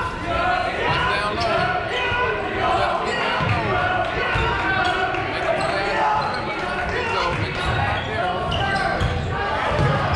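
Basketball game in a gymnasium: a ball bouncing on the court amid many overlapping voices, echoing in the large hall.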